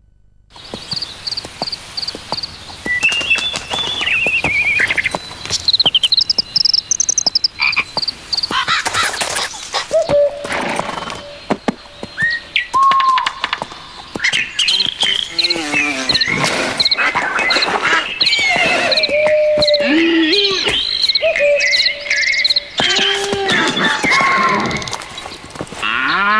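A chorus of animal calls: rapid strings of high chirps like birdsong over lower, short calls that rise and fall in pitch, many overlapping. It starts after a moment of silence and grows denser from about ten seconds in.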